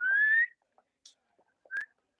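A person whistles one short rising note of about half a second, then a brief chirp near the end. It is a signal for the dancers to switch partners.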